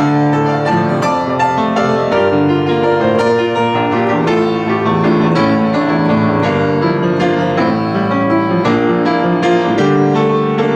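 Kawai 44-inch upright piano being played: a continuous flowing passage of chords and melody, with notes struck in quick succession and left ringing.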